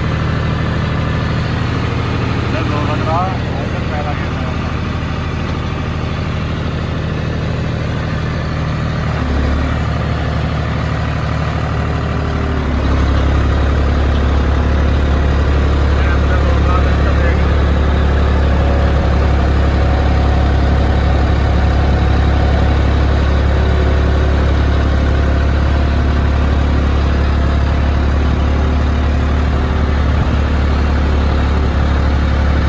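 John Deere 5405 tractor's diesel engine running steadily, heard from the driver's seat. The engine note shifts about nine seconds in, then gets louder and heavier about thirteen seconds in as the tractor gets under way.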